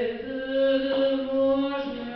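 Slow sung chant with long held notes, a single melodic line.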